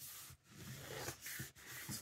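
Faint rustle of hands rubbing and smoothing a sheet of scrapbook paper against a cutting mat, lightly creasing a fold along its score line.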